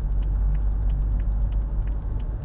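Low, steady rumble of a car's engine and tyres heard from inside the cabin while driving slowly, with faint irregular ticks above it.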